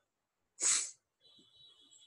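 A single short, sharp breath noise from a person, such as a quick sniff or intake of breath, about half a second in. It is followed by faint room noise with a thin, steady high whine.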